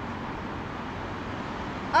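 Steady background noise of road traffic, with no distinct events standing out.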